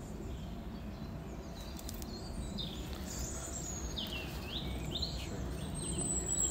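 Wild birds calling in woodland: a handful of short, high, whistled chirps and curving glides in the second half. Under them runs a steady low outdoor background noise.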